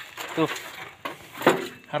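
A man's voice saying a few short words, with faint background noise in the gaps between them.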